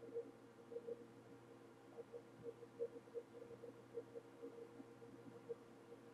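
Near silence: a faint steady hum of the recording's background noise, with soft brief pulses coming and going.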